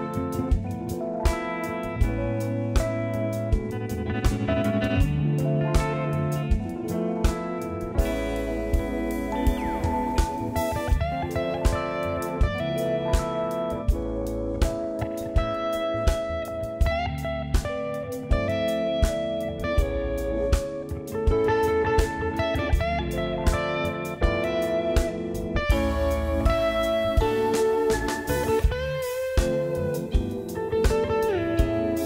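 A live instrumental jazz band plays: chords on a hollow-body electric guitar over keyboard, electric bass and a drum kit keeping a steady beat.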